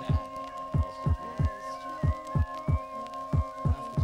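Instrumental hip-hop beat: deep kick drum hits in a repeating pattern, about two a second, under a steady held synth tone.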